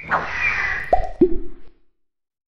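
Logo-animation sound effects: a brief swoosh, then two quick falling 'bloop' pops about a third of a second apart, the second lower than the first, cutting off just before the end.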